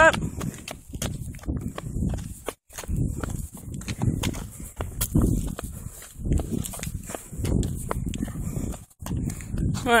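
Walking footsteps with the low rumble and rustle of a handheld phone being jostled as it is carried, in uneven pulses about once a second. The sound cuts out briefly twice.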